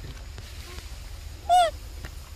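A macaque gives one short, high call about one and a half seconds in, its pitch rising and then falling.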